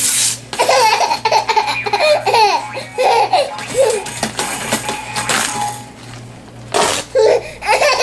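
Paper being torn by hand, a quick ripping sound at the start and again about seven seconds in. Each rip sets off a baby's bursts of laughter and giggling.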